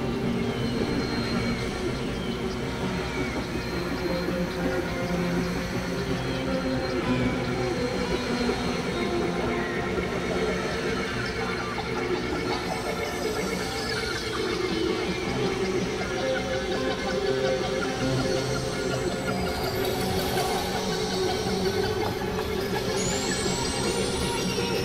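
Experimental electronic noise music: a dense, steady wash of synthesizer drones and noise with several low held tones layered in it. A few high rising whistles come in near the end.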